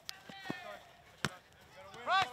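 Soccer ball kicked: three sharp thumps, the loudest just past a second in, with a short shout from a player early on.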